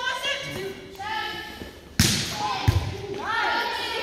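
A volleyball struck sharply about halfway through, then a low thud of the ball on the gym floor, among voices in a large echoing hall.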